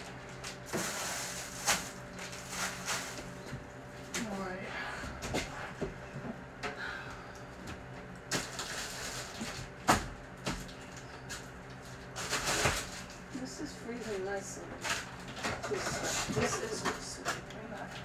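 Kitchen handling sounds: scattered knocks, clatters and rustles of dishes, containers and food being moved on a counter, the sharpest knock about ten seconds in, over a steady electrical hum, with faint indistinct voices.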